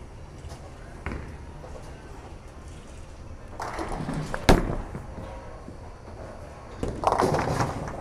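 A bowling ball set down on the lane with a thud about a second in, a rolling rumble, then a sharp crash into the pins about four and a half seconds in, which is the loudest sound. A further rattle of pins and alley noise comes near the end.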